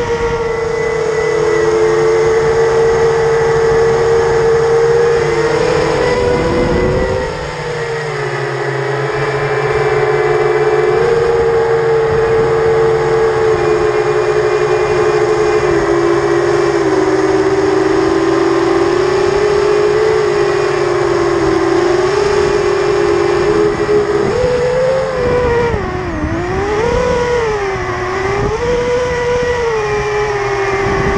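Brushless motors and propellers of an FPV racing quadcopter (BrotherHobby Returner R5 2306 2650kv motors) whining in flight, heard on the onboard camera with wind noise. The pitch holds mostly steady, dips briefly about seven seconds in, then swings up and down quickly near the end as the throttle changes.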